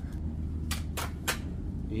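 Three short, sharp clicks about a third of a second apart, over a low steady hum.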